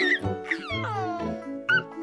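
Gentle children's background music with a baby laughing over it in a few short, high squeals.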